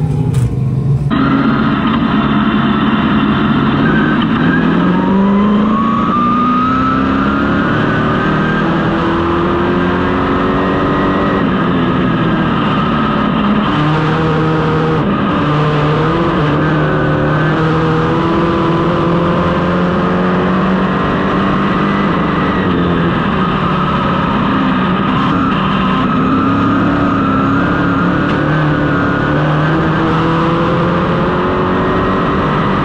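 Northeast dirt modified's V8 engine racing flat out, heard from inside the car. The revs climb and drop again and again as it accelerates down the straights and lifts for the turns.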